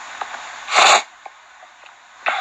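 A man's single short, forceful breath noise, a sharp burst of air through the nose or mouth, about three-quarters of a second in, with a few faint clicks around it.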